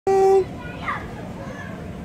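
A voice holding one sung note for under half a second at the very start. Then a quieter outdoor background with a short high voice that falls in pitch, the sound of children at play.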